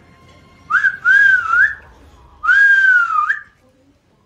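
Someone whistling two long notes about a second apart: the first wavers up and down, the second holds and then slides down before a short upward flick at the end.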